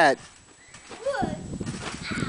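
A loud voice cuts off at the very start, then a short vocal sound about a second in, followed by a run of soft low thumps from a backyard trampoline mat as a child bounces and drops onto it.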